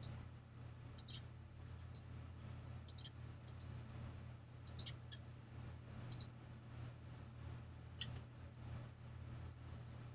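Faint, scattered clicks of a computer mouse, about eight spread through, some close together in pairs, over a low steady hum.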